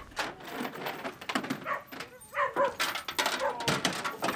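Many dogs barking over one another, short barks in quick, irregular succession.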